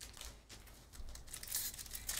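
Foil wrapper of a trading-card pack being torn open and crinkled, a crackling rustle that grows louder in the second half.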